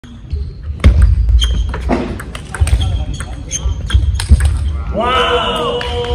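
Fast table tennis rally: the celluloid ball clicks sharply and in quick succession off the rackets and the table, echoing in a large hall. About five seconds in the clicking stops and a pitched, cry-like sound with a swooping pitch takes over.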